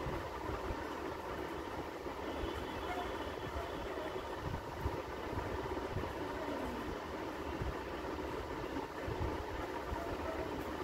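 Steady low background hum and hiss with no clear events.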